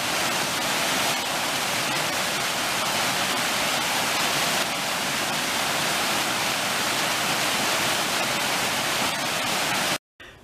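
Waterfall cascading over rocks: a steady rush of falling water.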